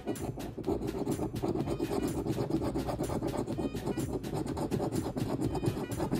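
A coin scraping the silver coating off a paper scratch-off lottery ticket in rapid, repeated back-and-forth strokes.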